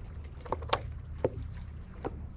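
Water lapping against the hull of a small plastic fishing board, with four short knocks and splashes over a steady low rumble.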